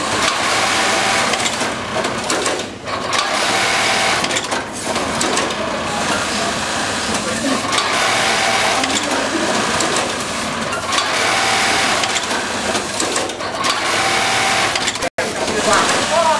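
JUKI MOL-254 industrial sewing machine running steadily, with a few brief pauses between sewing runs and a sudden momentary cut-out near the end.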